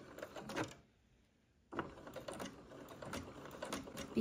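Domestic sewing machine running a straight stitch: a short run of stitching, a pause of about a second, then steady stitching again from about two seconds in.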